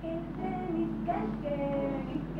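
A high voice singing slowly, holding long notes and sliding gently between pitches.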